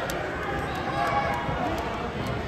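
Gym noise during a wheelchair basketball game: indistinct voices of players and spectators, with sport wheelchairs rolling on the hardwood court.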